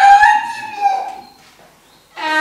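A single long crowing call that rises in pitch, holds, and falls away just over a second in.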